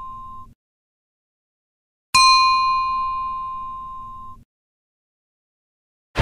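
The fading tail of a bell strike is cut off abruptly. After a moment of dead silence the bell is struck again, rings with a clear high tone, fades, and is cut off abruptly again.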